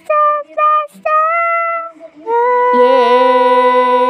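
A pop song's lead vocal sings three short notes, "faster, faster, faster". About two seconds in it goes into one long held note, "yeah", with a slight waver.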